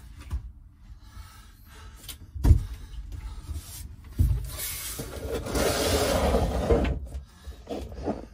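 Handling noise: a sharp knock a couple of seconds in and a thump about four seconds in, then a few seconds of loud rubbing close to the microphone.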